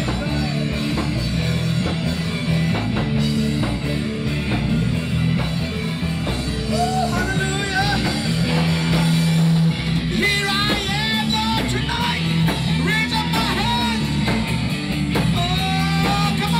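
Live amplified worship band playing rock-style music on electric guitars, with a voice singing over it.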